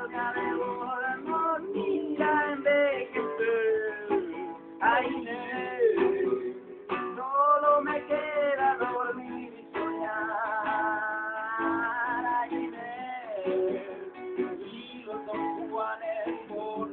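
Nylon-string classical guitar strummed as accompaniment to a man singing, with a long held, wavering note about ten seconds in.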